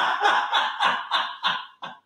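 A person laughing in a quick run of short bursts, about four a second, that breaks off abruptly near the end.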